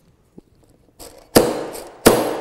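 A hammer striking an eyelet setter once, a sharp knock about one and a half seconds in that fades over half a second, setting a metal eyelet through the stacked paper layers of a pinwheel.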